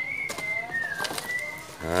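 A thin, high whistle-like tone held throughout, dipping slightly in pitch just after the middle, with a couple of faint clicks as the wire-mesh trap is handled.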